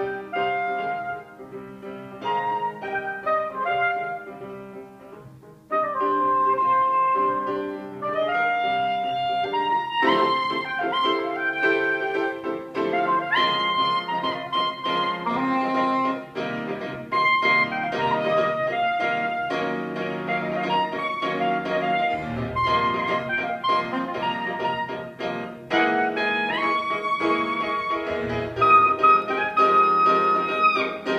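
Soprano saxophone and grand piano playing a duet, the saxophone carrying the melody over piano. It begins in short phrases with brief gaps, then swells into fuller, continuous playing about six seconds in.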